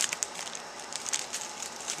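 Thin plastic packaging crinkling as a sealed fast-food toy in its bag is handled, a run of irregular crackles.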